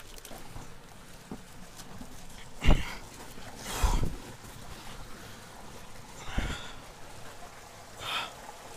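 Clothing and gear scraping and knocking against rock as a person crawls through a narrow gap between boulders, with three louder bumps, the first nearly three seconds in, the last about six seconds in, over the steady rush of a stream running under the rocks.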